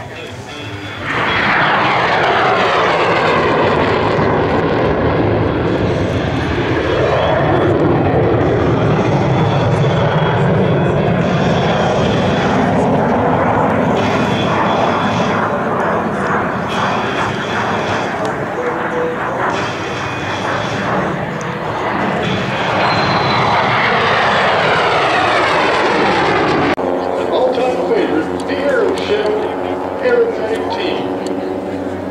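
Swept-wing jet fighter in afterburner running loud as it makes low passes, its pitch falling as it goes by, once at the start and again late on. Near the end the jet noise cuts off abruptly and gives way to a different, steadier sound.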